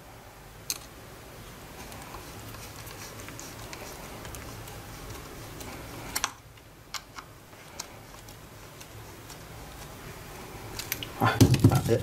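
Screws being turned by hand with a screwdriver into a plastic battery adapter: a steady scraping for about five seconds, a pause with a few sharp clicks, then scraping again.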